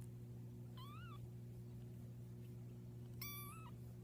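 A very young kitten mews twice: a short high-pitched mew that rises and falls about a second in, and a slightly longer level one near the end. A steady low hum runs underneath.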